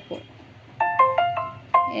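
Short electronic notification jingle of about five quick notes, sounding as a phone connects to a Bluetooth thermal printer.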